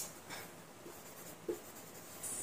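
Felt-tip marker writing on a whiteboard: faint, short scratchy strokes.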